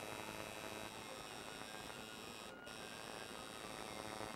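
Coil tattoo machine buzzing faintly and steadily as it works ink into skin.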